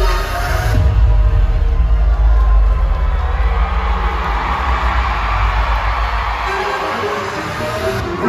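Concert music with a heavy, deep bass through the PA, under an arena crowd cheering and screaming that swells from a couple of seconds in. The bass fades out near the end.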